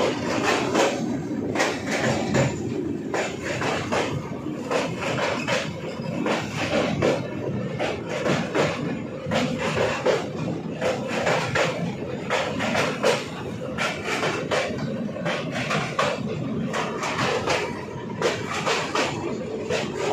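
Passenger train heard from on board, running with a continuous, irregular metallic clatter and rattle of wheels and coach, the sound of crossing a river bridge.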